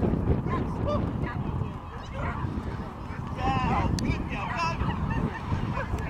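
A dog giving short, high, excited barks and yips in bursts, over a steady low rumble.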